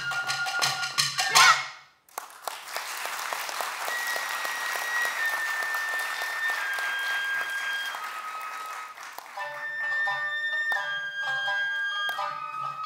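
Awa odori festival band playing: shinobue bamboo flute over a low drum rhythm, breaking off about two seconds in. Long flute notes stepping downward then sound over a dense noisy wash, and the drums and full band come back in near the end.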